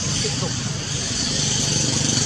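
Steady outdoor background noise: a continuous high hiss over a low rumble, with no distinct event standing out.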